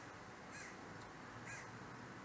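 Faint room tone with two brief, faint bird calls about a second apart.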